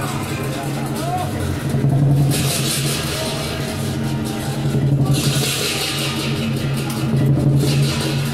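Lion dance percussion: a drum beating steadily over a low hum, with loud cymbal crashes clashing in three spells, about two, five and seven seconds in.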